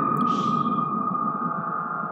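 Horror-film teaser soundtrack: one steady, high, eerie tone held over a low rumbling drone, with a short hiss about a quarter-second in.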